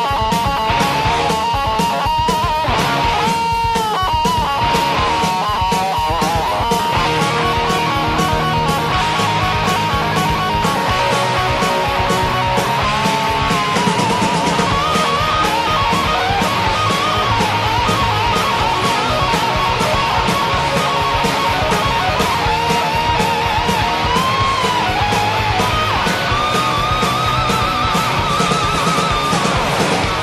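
A rock song in an instrumental break without singing: electric guitar plays a lead melody over a steady drum beat and bass.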